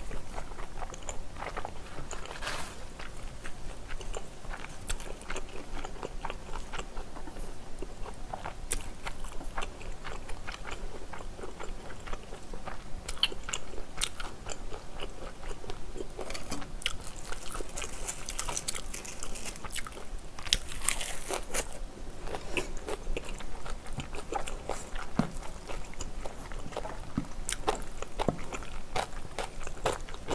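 Close-up eating sounds: wet chewing, biting and crunching of spicy stir-fried squid and pork belly with glass noodles, with a denser run of crisp crackling about two-thirds of the way in as a lettuce wrap is handled and bitten.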